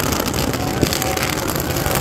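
Fireworks packed into a burning effigy crackling continuously, many small pops over a steady low rumble.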